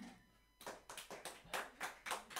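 Rapid hand clapping, starting about half a second in, just after the last acoustic guitar chord fades out.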